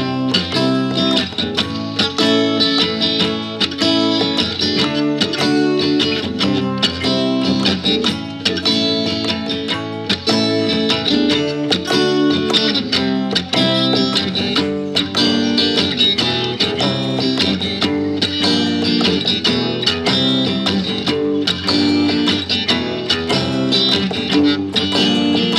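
Surf-rock-style guitar music: an acoustic guitar run through GarageBand pedal and amp simulations, played over a programmed GarageBand drum track with a steady beat.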